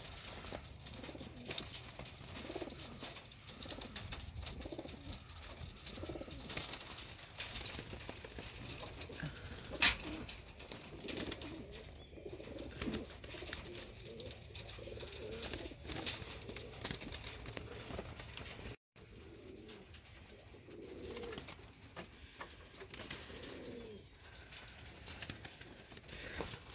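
A loft full of homing pigeons cooing, several birds overlapping in low rising-and-falling coos, with scattered sharp clicks and wing flaps as birds shift about on the wire mesh; the loudest click comes about ten seconds in.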